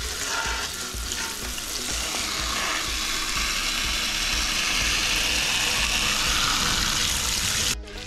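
Garden hose spray nozzle jetting water onto raw chicken pieces in a stainless steel pot: a steady hiss of spray and splashing that cuts off suddenly near the end.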